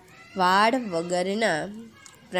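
A woman's voice speaking in long, drawn-out syllables, as in slow dictation of a written answer.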